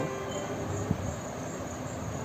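High-pitched insect chirping, cricket-like, pulsing evenly about three times a second. A single short click about a second in.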